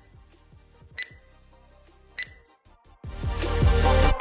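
Interval-timer beeps: three short, high electronic beeps about a second apart as the countdown reaches zero, marking the end of a drill interval. Background music comes back in loudly near the end.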